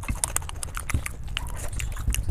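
Close-miked, wet mouth sounds of a person chewing a mouthful of spiced rice eaten by hand, with many quick clicks and smacks.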